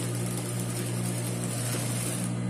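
Mitsubishi industrial sewing machine running with a steady motor hum while it stitches, here backstitching across the end of an elastic strap.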